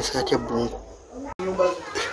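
Voices talking, with a sudden brief dropout a little past halfway where the audio is cut.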